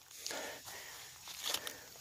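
Quiet footsteps of someone walking across grass and ground litter, with faint rustling and a few light clicks near the end.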